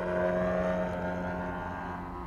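Giant-scale radio-controlled aerobatic airplane's gasoline engine and propeller droning in flight, with its pitch and level easing slightly down.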